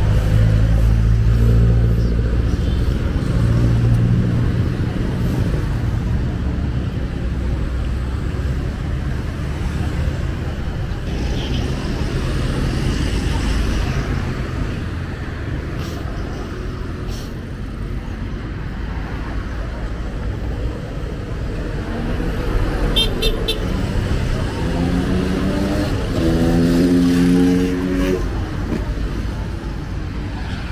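Road traffic passing close by: cars and motorcycles going by in a continuous low rumble. An engine runs loud at the start, a few short high beeps sound about two-thirds of the way through, and near the end an engine accelerates, its pitch rising.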